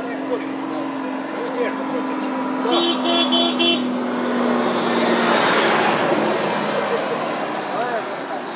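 A vehicle horn gives four quick beeps about three seconds in, over a steady low hum and faint background voices. A broad rushing noise swells after the halfway point.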